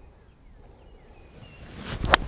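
Faint outdoor ambience with a few thin bird chirps. Near the end comes the rising whoosh of a golf iron swung through its downswing toward the ball.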